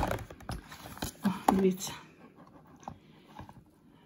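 Rustling and light knocks of a power bank and its paper packaging being handled on a table, loudest in the first second, then fading to a few faint taps.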